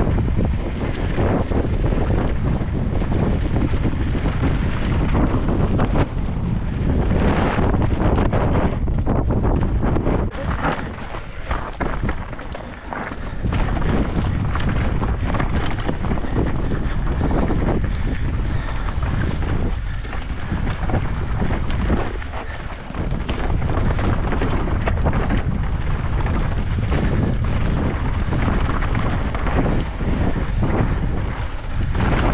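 Wind buffeting the microphone of a camera riding on a mountain bike at speed down a rocky dirt trail, mixed with the rumble of the tyres and frequent knocks and rattles of the bike over rough ground. The noise eases briefly twice, about eleven seconds in and again a little after twenty seconds.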